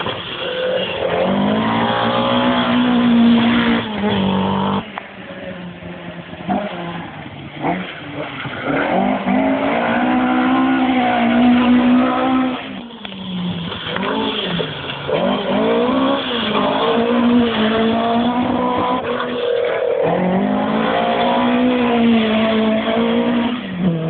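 Historic rally car engine driven flat out, revs climbing and dropping again and again through gear changes and lifts, with the sound briefly falling away about five seconds in and again around thirteen seconds.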